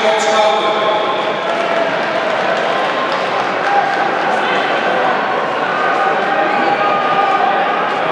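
A man talking over a public-address system, with a steady background of crowd and rink noise.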